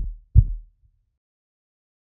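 Heartbeat sound effect: a single low double thump, lub-dub, right at the start, the second beat coming about half a second after the first.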